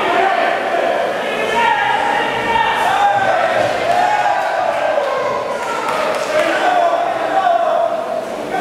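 Voices shouting from ringside during a kickboxing bout, drawn-out calls rising and falling in pitch, with occasional dull thuds of strikes and footwork on the ring canvas.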